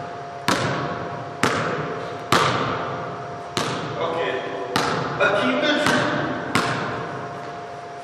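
Basketball bounced on a wooden gym floor, seven bounces about a second apart, each ringing out in the large hall.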